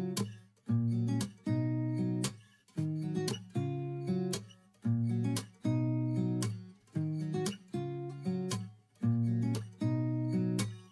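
Background music: acoustic guitar chords strummed in a steady rhythm, each chord struck and fading before the next.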